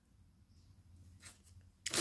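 Near silence with a faint, brief rustle of small packaging being handled (a paper collector's card and a foil-and-plastic wrapper) about a second in; a voice starts right at the end.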